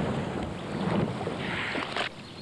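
Steady rushing noise of wind and water, cut off abruptly at the end.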